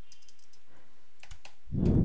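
A few light computer-keyboard keystrokes as a word is typed, the clicks sparse and faint. Near the end comes a louder, short, low-pitched noise.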